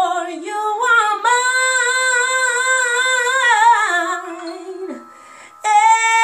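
A woman singing unaccompanied in a tiled room, drawing out long melismatic notes with vibrato. The voice drops away to a brief pause about five seconds in, then comes back on a loud new note.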